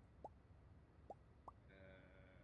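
Faint, short rising 'plop' blips, three in quick irregular succession, then a brief steady buzzy tone near the end. These are sound effects from a social VR app, likely the pops of avatars' emoji reactions.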